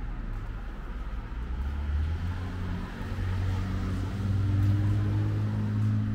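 Car engine accelerating close by, its hum stepping up in pitch and growing louder, loudest in the second half.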